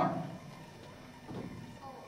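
A man's voice breaks off at the start, then quiet lecture-hall room tone with a faint soft sound about a second and a half in.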